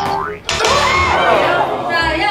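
Comedy sound effects edited in over a missed throw: a quick rising cartoon boing, then a loud meme voice clip with swooping pitch.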